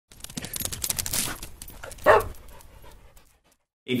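A dog panting quickly, then a single short bark about two seconds in, heard as an opening sound sting.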